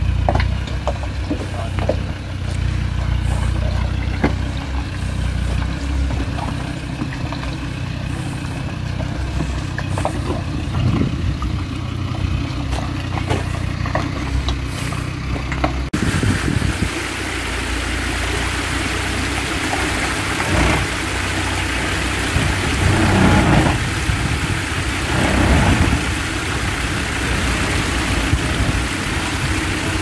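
Land Rover Discovery's engine running at low revs as it crawls over a rocky track, with stones clicking and knocking under the tyres. About halfway through a steady hiss takes over, and the engine rises in a few short surges as it climbs.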